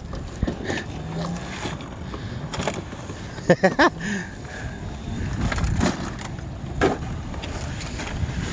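Riding noise from a Daymak e-bike rolling over wet concrete: wind rushing over the microphone with a low rumble. Bursts of laughter break in, loudest a few seconds in and again briefly near the end.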